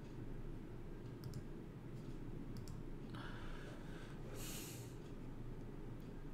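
Quiet room tone with a few faint computer mouse clicks and a short breath about four and a half seconds in.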